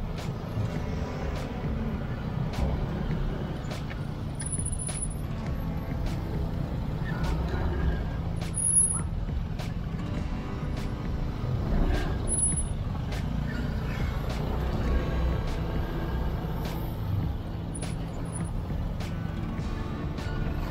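Motorcycle engine running at low speed in slow, dense road traffic, with the steady low rumble of surrounding scooters and cars. A few short high-pitched squeaks come and go.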